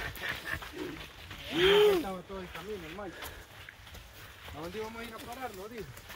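Men's voices on the move, mostly unclear talk with one loud drawn-out call about one and a half seconds in, over faint footsteps on a dirt path.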